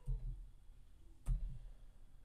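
Two low knocks about a second and a quarter apart, the second one sharper with a click on top.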